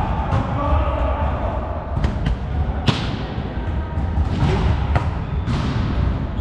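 Volleyball being struck and bouncing on a sports-hall floor: several sharp smacks that echo round the hall, the loudest about three seconds in, over a steady low rumble of hall noise.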